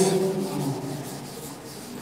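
A blackboard duster rubbing across a chalkboard, wiping chalk off.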